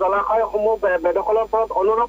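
Speech only: a man reporting over a telephone line, his voice thin and cut off at the top like a phone call.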